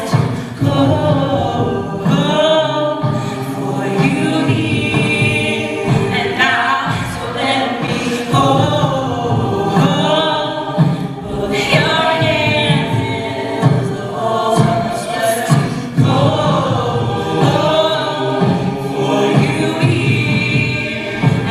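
Live a cappella group singing, voices only: a female soloist over the ensemble's vocal backing.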